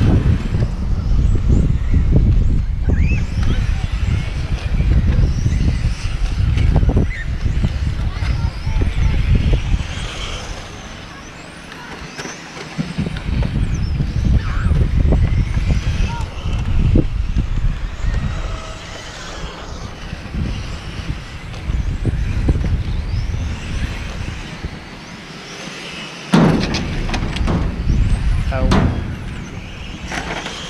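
Electric radio-controlled touring cars whining as they accelerate and brake around the track, rising and falling over heavy wind rumble on the microphone. A sudden loud knock comes near the end, followed by a few smaller ones.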